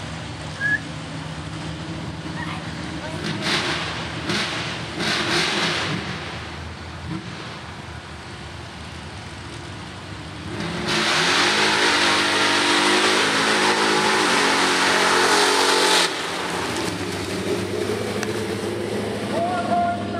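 Mud bog truck's engine idling and revving in short bursts, then running at full throttle for about five seconds with a rising pitch before cutting off suddenly.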